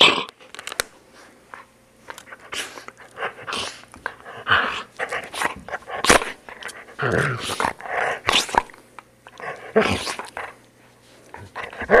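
Black poodle growling in repeated short, irregular bursts while its coat is being combed.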